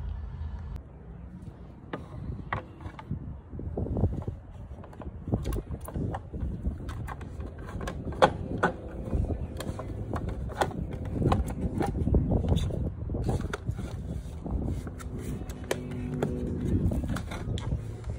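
Scattered clicks and knocks of a hard plastic mirror cover being handled and pressed over a car's side mirror housing, over low rumbling handling noise.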